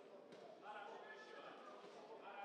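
Faint murmur of voices in a hall, with a single dull thud from the boxers in the ring about a third of a second in.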